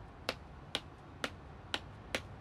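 Footsteps of a schoolgirl's shoes, heard as faint, sharp clicking steps, about two a second.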